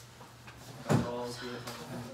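A single sharp knock about a second in, followed by a man's voice making a wordless sound lasting about a second.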